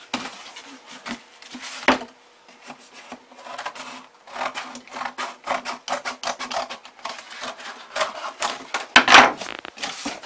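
Scissors cutting through box cardboard: a run of irregular crunching snips with short pauses between them, the loudest one near the end.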